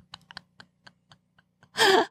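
A woman's laughter trailing off in quick, faint breathy pulses, then a loud gasping breath near the end.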